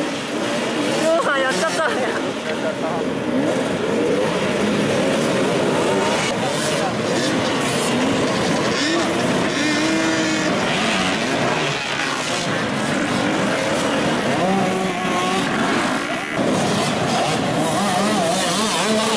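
A pack of enduro dirt bike engines revving hard and unevenly, several at once, as the bikes are ridden up a steep dirt climb; the pitches keep rising and falling as the riders work the throttle.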